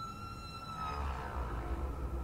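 A faint, steady high tone with a few overtones, held for about a second and then fading away, over a faint low rumble.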